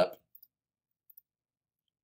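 Faint computer mouse clicks: a single click, then a quick double-click about a second in, opening a file. Otherwise near silence.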